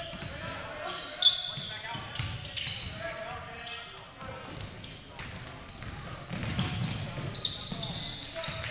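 Basketball game in a gym: rubber-soled sneakers squeaking on the hardwood court in many short high squeals, the loudest a little over a second in, over a basketball dribbling and indistinct shouts from players and the crowd.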